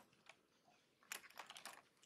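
Faint taps and scratches of a stylus on a tablet screen, a quick run of light ticks about a second in as a bracket is drawn.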